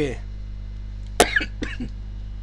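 A man coughs once, a sharp onset about a second in followed by a short rough tail, over a steady low hum.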